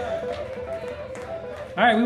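Electric guitar letting a few soft notes ring and sustain. A man's voice comes in on the microphone near the end.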